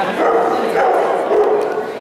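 A dog making excited high yips and a drawn-out whine, over people talking in the background.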